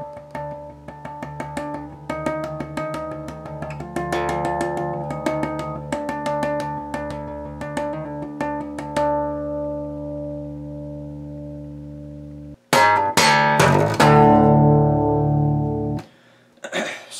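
Electric bass (an Ibanez Mikro through an amp) playing tapped artificial harmonics: quick, bell-like ringing notes in a rapid run that steps up and back down the neck, then rings out and fades. Near the end, after a brief break, a few loud, hard-struck bass notes ring out.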